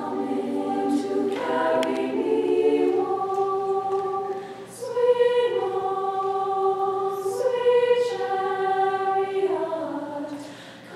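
All-female high school choir singing a cappella in close harmony, holding sustained chords in phrases, with a short breath between phrases about halfway through.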